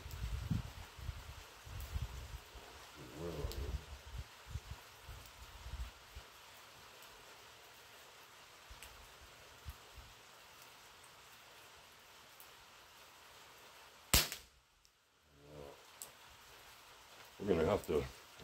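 Pellet air rifle fired once, a single sharp shot about fourteen seconds in. Before it, only faint low rumbles and handling noise.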